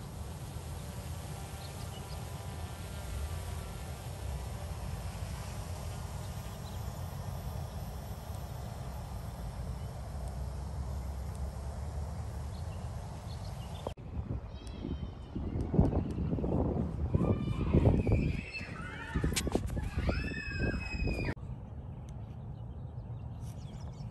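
Black Hornet nano drone's rotor hum, faint over wind noise on the microphone. About 14 s in the sound changes abruptly, and a run of loud calls gliding up and down in pitch follows for several seconds before it is quieter again.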